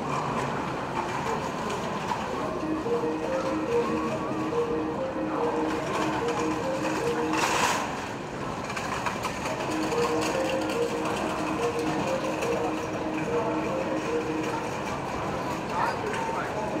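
A JR 381 series electric limited express train pulling slowly into a station platform and coming to a stop, with a repeating two-note electronic tone sounding over it. A short burst of hissing air comes about halfway through.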